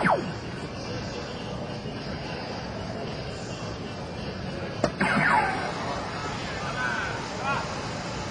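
A soft-tip dart hits an electronic dartboard with a sharp click about five seconds in, and the machine answers at once with a cluster of falling electronic tones: its sound effect for a bull. A falling electronic tone at the very start ends the previous hit's effect, and a short electronic jingle sounds near the end as the machine changes player, over steady hall chatter.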